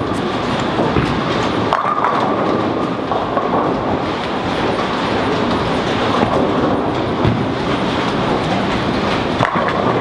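Bowling-centre din from many lanes at once: a steady rumble of bowling balls rolling down the lanes, with pins clattering now and then.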